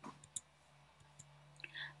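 A few short, faint clicks over a quiet, steady low hum, the sharpest about a third of a second in.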